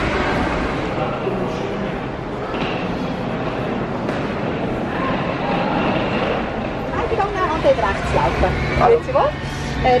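Chatter of many people's voices in an airport boarding area. From about seven seconds in, a nearer voice talks over a steady low hum.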